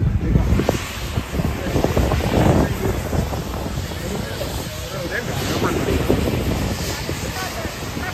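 Wind buffeting the microphone in uneven gusts, over the steady hiss and engine drone of a trailer-mounted pressure washer running.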